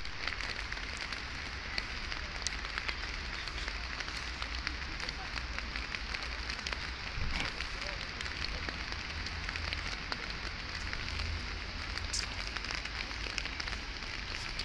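Steady rushing hiss of a fast-flowing river in flood, full of fine crackle, over a low rumble.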